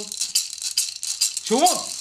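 Hand-held gourd rattle shaken in an even rhythm, about four shakes a second, as a song ends. Near the end a voice calls out with a rise and fall in pitch.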